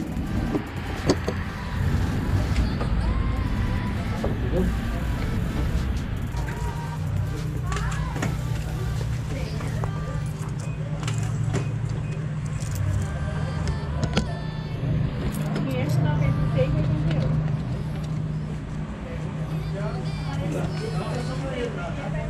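Indistinct background voices of other people over a steady low hum, with scattered small clicks and knocks from handling.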